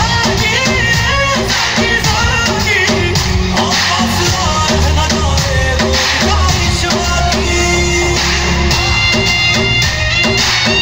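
Loud Bollywood dance song with a steady beat and a singing voice.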